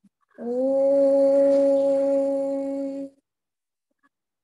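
A woman's voice holding one long, steady sung note for about two and a half seconds. It slides up slightly into the note at the start and cuts off near the end.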